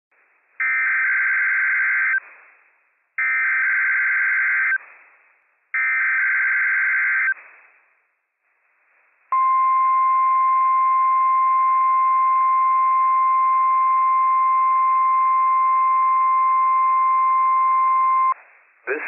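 NOAA Weather Radio emergency alert signals for a Required Weekly Test. There are three buzzy SAME digital data bursts of about a second and a half each. Then, about nine seconds in, the steady single-pitch 1050 Hz warning alarm tone starts and holds to the end.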